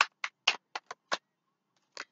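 A deck of tarot cards being shuffled by hand: a run of sharp card snaps, about four a second, stopping just over a second in, then a single click near the end.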